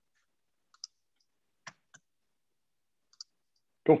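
A few faint, scattered clicks of computer keys being pressed while a short piece of text is edited.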